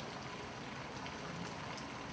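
Faint, steady background noise: an even hiss with no distinct sounds in it.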